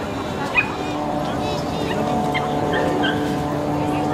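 A dog barking a few short times, the loudest about half a second in, over background chatter and a steady hum.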